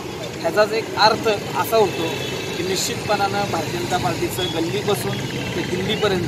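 A man talking in Marathi, over a steady hum of street traffic.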